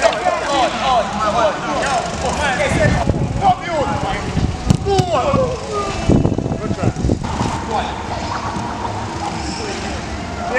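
Footballers' voices calling and shouting across a five-a-side pitch, several at once, with a few low thumps in the middle.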